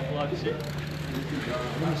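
People talking in the background, over a steady low hum.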